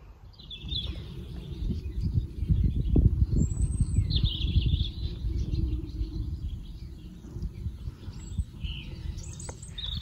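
Small birds chirping now and then over a gusting low rumble of wind on the microphone.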